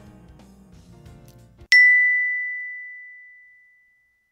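Soft background guitar music stops about one and a half seconds in. A single bright ding follows: a bell-like chime sound effect that rings on one high note and fades away over about two seconds.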